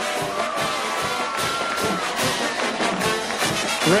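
Stadium band music with a steady drum beat and a held note, playing over crowd noise after a touchdown.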